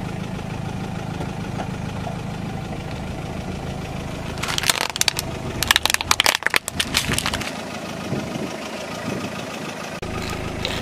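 Car engine idling with a steady low hum, then from about four and a half seconds in, a run of sharp plastic cracks and snaps lasting about three seconds as the tyre rolls over and crushes a plastic toy race car.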